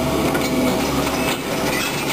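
Tracked hydraulic excavator working as it digs: a steady diesel engine rumble with a held whine and rattling, clanking clatter. The low rumble eases about two-thirds of the way through.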